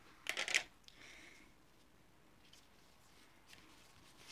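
A brief rustle and scrape of paper or card being handled, about a third of a second in, then a quiet room with a few faint handling sounds.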